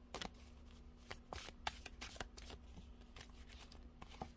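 A deck of oracle cards being shuffled by hand: a quick, irregular run of soft clicks and slaps as the card edges flick and slide together.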